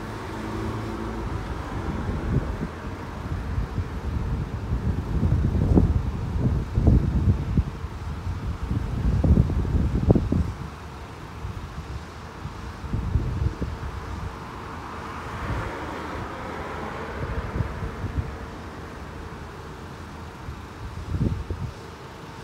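Road traffic at a busy junction, a low steady rumble of waiting and moving vehicles. Wind buffets the microphone in gusts, strongest from about four to eleven seconds in and again briefly near the end.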